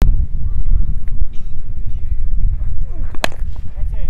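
A cricket bat striking the ball once, a single sharp crack about three seconds in, over a steady low rumble.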